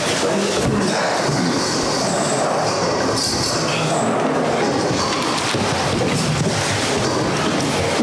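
A roomful of people sitting down on metal folding chairs: chairs scraping and knocking on a concrete floor, with feet shuffling, in a steady noisy clatter.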